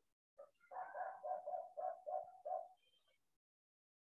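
A faint animal call in the background: a run of about seven short notes of the same pitch, about three a second, that stops after roughly two seconds.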